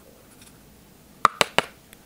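Three quick, sharp taps a bit over a second in, with a faint fourth just after: a makeup brush knocked against an eyeshadow palette to shed excess powder.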